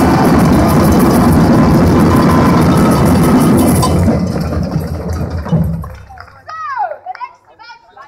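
Street parade drum band playing loudly at close range, a dense rhythmic pounding of bass and snare-type drums that stops about four seconds in and dies away by about six seconds. Voices from the crowd follow.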